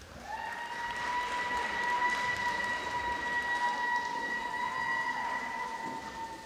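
Audience applauding at the end of a routine, with a steady high-pitched tone held over the clapping from just after the start.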